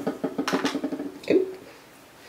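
Light clicks and rustles of a plastic product bottle being handled, with a short murmur of voice about one and a half seconds in.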